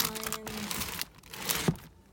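Items in a box of paper signs and frames being handled and shifted: paper and packaging rustling and crinkling, busiest in the first second, with a sharp knock about a second and a half in.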